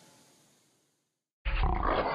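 The last strummed acoustic guitar chord fades away to near silence, then about one and a half seconds in an angry cat's growl starts suddenly and loudly.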